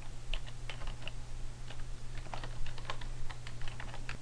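Computer keyboard typing: a run of irregular keystrokes, about fifteen in all, as an email address is typed in, over a steady low hum.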